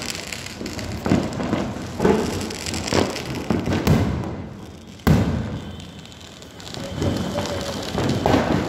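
Firecrackers going off at a distance: a string of dull bangs, each dying away, with a sharper, louder bang about five seconds in.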